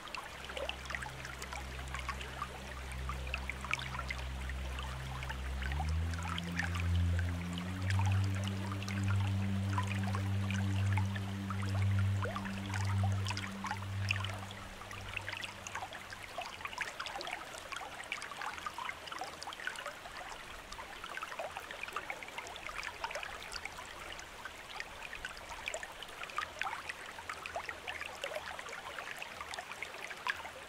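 Small waterfall splashing and trickling steadily over rock, with many small droplet ticks throughout. A soft, low sustained music drone sits under it in the first half, its pitch stepping up about six seconds in and fading out around sixteen seconds.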